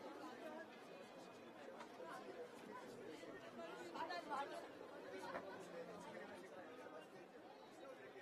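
Faint chatter of a large outdoor crowd, many voices talking over one another with no single speaker standing out.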